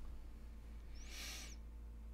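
Quiet pause with a faint steady room hum, and a short soft hiss about a second in.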